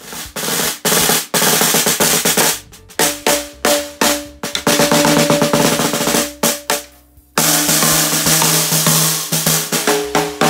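A shell-less Marcus de Mowbray spacer snare drum played in several bursts of rapid rolls and single strokes, with snare buzz, broken by short pauses. The head rings with a clear pitch under the strokes.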